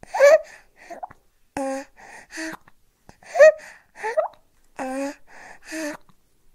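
Baby feeding from a bottle: short gasping breaths and little voiced whimpers and moans between sucks and swallows, about two sounds a second, the loudest gasps near the start and about three and a half seconds in.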